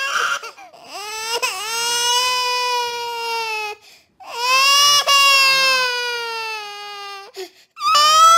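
Infant crying: a few short, choppy cries at first, then two long, steady wails of about three seconds each, with a short catch of breath between them.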